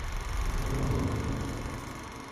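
Deep, noisy rumble of a film-logo sound effect that begins to fade near the end.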